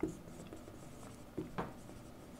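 Marker pen writing on a whiteboard: faint short strokes, the clearest two about one and a half seconds in.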